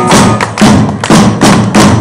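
Live rock band playing loud and distorted, with heavy drum hits about twice a second; the music stops right at the end as the song finishes.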